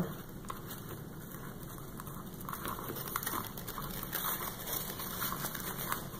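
Faint rustling and light crackling as dried moss and artificial leaves are handled and pressed into place on top of the pumpkin.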